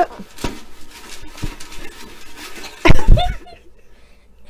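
Slips of paper rustling and rattling in a container as they are shaken, followed about three seconds in by a loud thump with a brief voice sound.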